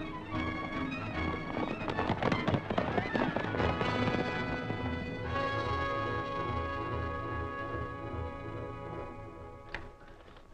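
Dramatic orchestral film score in a fast, driving chase passage, with the hoofbeats of a galloping horse in it during the first few seconds. About five seconds in the music settles into a long held chord that fades near the end.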